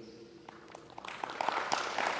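Audience applause that starts about a second in and swells quickly, many hands clapping at once.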